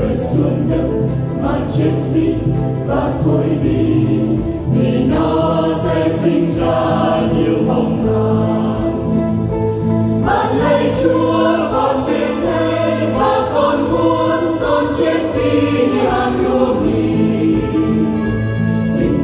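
Church choir singing a Vietnamese Catholic hymn with instrumental accompaniment.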